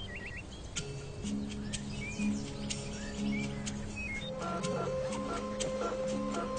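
Soft background film music with sustained notes, filling out in the second half, with a few short bird chirps near the start and scattered light clicks.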